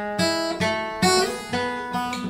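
Steel-string acoustic guitar fingerpicked in a slow arpeggio, thumb then fingers plucking single notes about every half second, each note ringing on under the next.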